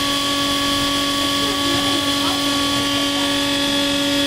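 Steady engine-room machinery hum with a strong constant low tone and fainter higher tones above it, holding an even level throughout. Faint voices can be heard in the background.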